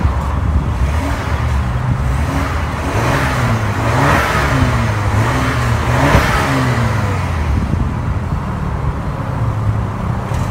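Exhaust of a BMW X3 xDrive28i's turbocharged 2.0-litre inline four-cylinder engine, heard from behind the car. It idles, is revved up and down several times in the middle, with the two strongest revs about four and six seconds in, then settles back to idle.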